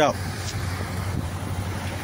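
A car engine idling steadily: a low, even hum under a faint outdoor hiss.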